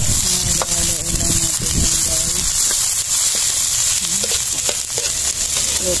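Chopped onions sizzling in hot oil in a wok. A metal spatula scrapes and taps against the pan as they are stirred, giving repeated short clicks over the steady sizzle.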